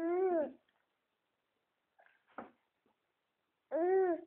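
Eight-month-old baby fussing with two drawn-out whining cries that rise and fall in pitch, one at the start and one near the end, with a short faint sound in between. The mother takes the fussing to mean he wants the phone.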